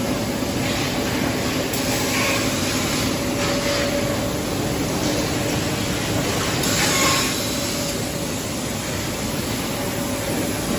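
Steady loud machinery noise of a running steel tube mill, with a low constant hum under it. Brief hissing surges come about two seconds in and again around seven seconds.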